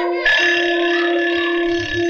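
An alarm clock's bell ringing. It starts about a quarter of a second in and stops abruptly right at the end, over a held note of the film's music.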